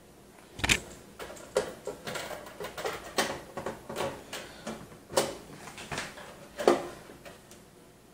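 A hard drive being shifted by hand against the metal panel of a PC case as it is lined up with the mounting holes: irregular clicks and knocks, with a few louder knocks, the loudest about a second in and near the end.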